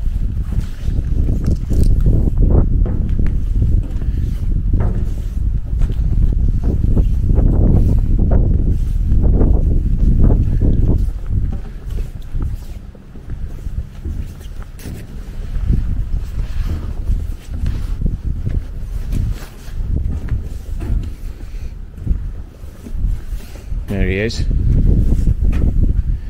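Wind buffeting the camera microphone, a loud low rumble that rises and falls in gusts and eases a little about halfway through.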